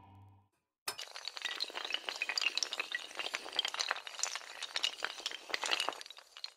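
Glass-shatter sound effect: a sudden crash just before a second in, followed by a long spill of tinkling, clinking fragments. A sustained musical tone fades out just before the crash.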